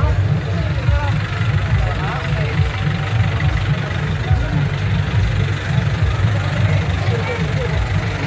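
A lorry's engine running slowly close by, a steady low rumble, with a crowd's voices over it.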